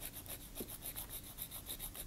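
Nail file rasping on a plastic press-on nail in quick, even back-and-forth strokes, faint. The nail is being filed down and shaped.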